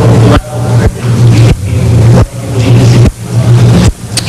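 Loud, steady electrical hum and hiss on the recording, with a faint, indistinct voice of an audience member asking a question away from the microphone.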